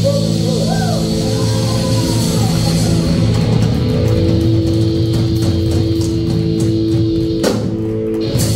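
Heavy metal band playing live: electric guitars hold long sustained notes, with pitch bends early on, over drums and cymbals, with a sharp hit shortly before the end.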